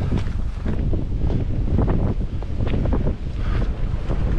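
Strong, gusty wind buffeting the microphone in a continuous low rumble, with the irregular scuff of footsteps on a dirt trail.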